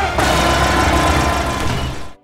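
CGI battle-scene soundtrack: a dense mix of music and battle sound effects over a deep, steady rumble, with a sudden change a moment in.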